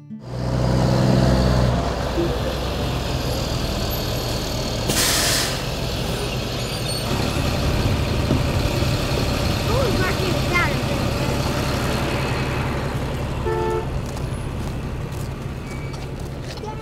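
Yellow school bus engine idling with a steady low rumble, with a short loud air-brake hiss about five seconds in. Children's voices chatter as they get off the bus.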